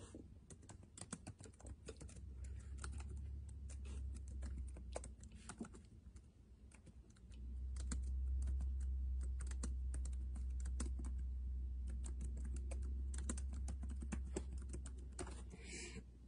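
Typing on a laptop keyboard: a run of irregular keystroke clicks, under a low steady hum that comes in for a couple of seconds early and again from about seven seconds in until near the end.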